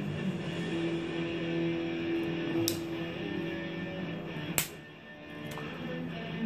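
Soft background music with held notes, and two sharp metallic clicks, about two and a half seconds and four and a half seconds in, the second the louder: the blades of a Victorinox Swiss Champ pocket knife clicking as they are worked open and shut.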